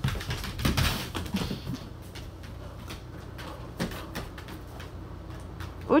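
Dogs scrambling on a hardwood floor during a game of fetch: a flurry of claw clicks and scuffling in the first two seconds, then a few scattered clicks.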